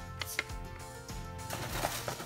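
Background music with steady tones, and two light clicks near the start as doll-size plastic toy dishes are handled.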